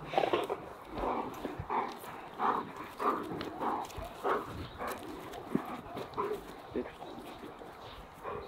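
German Shepherd dog panting after bite work, a steady run of soft breaths about one every half-second to second.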